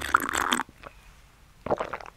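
Slurping a cold drink up through a plastic straw: a noisy sip in the first half-second, then a short burst of noise near the end.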